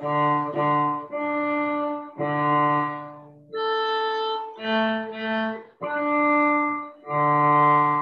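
Cello bowed in a slow phrase of about eight sustained notes, mostly a second or so long, with two shorter notes in the middle: a simple harmonics exercise for beginners on the D and A strings.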